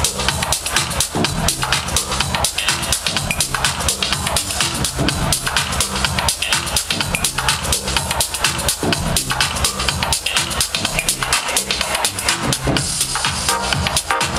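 House music from a DJ set played loud over a nightclub sound system, with a steady kick-drum beat.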